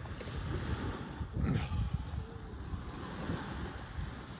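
Wind buffeting the microphone in uneven gusts, with a brief stronger rush about a second and a half in.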